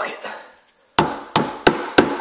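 Rusty notched steel trowel rapped against the rim of a bucket of vinyl flooring adhesive: four sharp knocks about a third of a second apart, starting about a second in.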